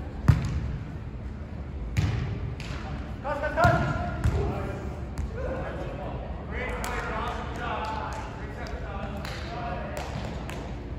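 A volleyball struck by hands and forearms during a rally: four sharp hits in the first half, the first the loudest, with players' voices calling out between and after them.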